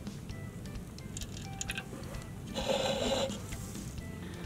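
Soft background music, with water trickling from a tilted plastic cup into a second plastic cup. The pour gets louder for under a second about two and a half seconds in.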